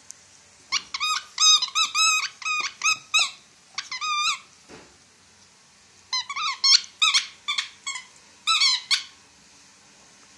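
A dog's squeaky toy ball squeaking in quick runs as the dog bites down on it. There are two bursts of rapid squeaks, the first about a second in and the second about six seconds in.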